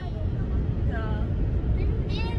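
Steady low rumble of a car driving on a paved road, heard from inside the cabin. A voice is heard briefly about a second in and again near the end.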